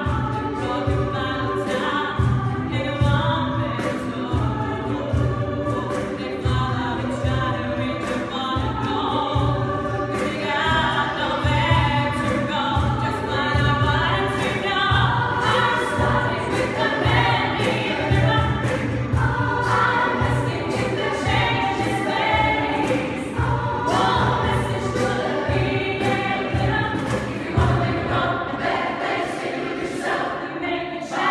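A mixed a cappella vocal ensemble singing a pop arrangement in close harmony, over a pulsing sung bass line and a steady vocal-percussion beat of sharp clicks.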